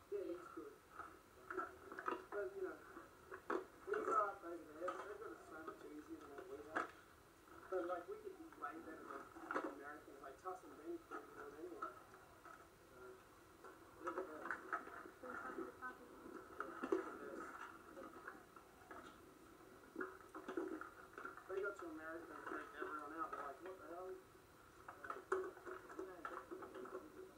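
Muffled, unintelligible voices from a VHS home video playing through a television's speaker and picked up by a phone. The sound is thin and narrow in range, with a few short clicks.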